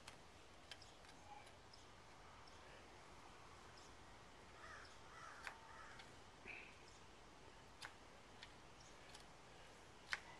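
Near silence: faint barn room tone with a few scattered faint clicks and a couple of short faint calls near the middle.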